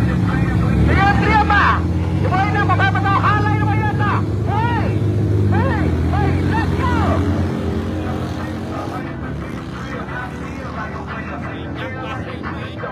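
Motorcycle engine idling steadily at a drag-race start line, its low note fading away about seven to eight seconds in, with a voice over it.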